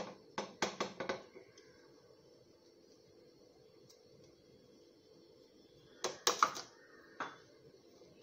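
A spatula and measuring cup knocking and scraping against a cooking pan as semolina is stirred into hot milk. There is a quick cluster of knocks in the first second, another cluster about six seconds in, and a single knock shortly after.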